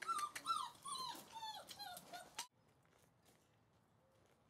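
German Shorthaired Pointer puppy, about five weeks old, whimpering: a quick run of seven or eight short, high whines, each falling in pitch, that stops abruptly about two and a half seconds in.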